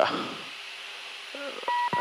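Steady jet cockpit noise with a faint low hum. A short electronic blip comes about a second and a half in, then a steady electronic beep starts near the end.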